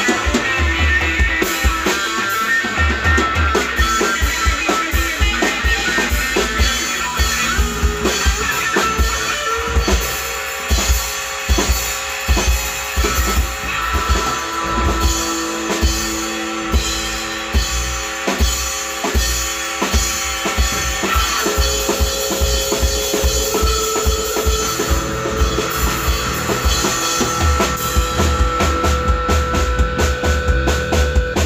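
Live instrumental rock jam: electric guitar, bass guitar and a drum kit playing together, with the drums (kick and snare) steady and prominent throughout.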